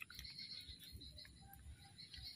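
Near silence: faint outdoor background with a few soft ticks.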